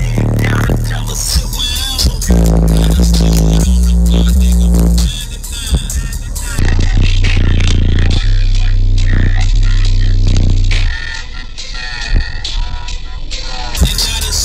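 Bass-heavy music played loud through a car audio system of four American Bass XR 12-inch subwoofers in a fourth-order C-pillar enclosure. Two deep bass notes, each held for about three to four seconds, are the loudest parts.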